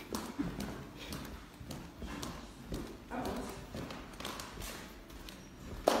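Light, irregular knocks and taps, about two a second, like things being set down or steps on a hard floor.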